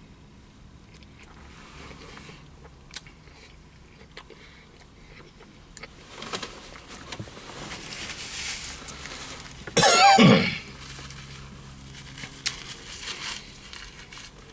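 A man chewing a bite of sandwich, with small mouth clicks and rustles, then one loud throaty cough about ten seconds in.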